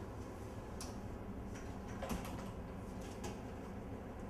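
A steady low hum with a few scattered, irregular light clicks and taps.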